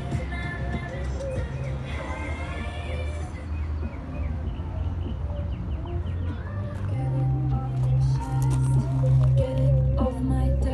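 Background music playing from a green Bose outdoor landscape speaker sitting in gravel, with a strong, steady bass beat. The bass grows stronger about seven seconds in, as the microphone comes close to the speaker.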